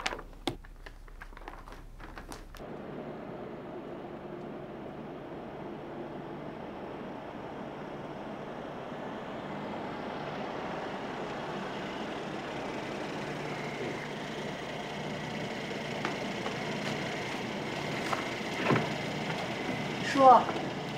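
A few light clicks, then the steady noise of a car's engine and tyres, slowly building as a Mercedes-Maybach saloon pulls up, with a sharp click near the end as its door is opened.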